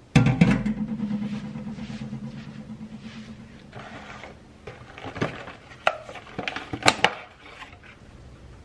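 A metal enamel colander set down in a stainless steel sink with a clank that keeps ringing, fading over about three seconds. This is followed by a few sharp crackles and clicks of a plastic clamshell container being handled, the loudest about seven seconds in.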